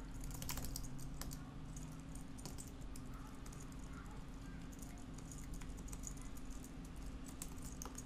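Quiet typing on a computer keyboard: a run of irregular keystrokes over a low steady hum.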